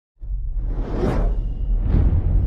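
Cinematic whoosh sound effect over a deep bass rumble, starting just after the opening and swelling to a peak about a second in, with a second, smaller whoosh near the end.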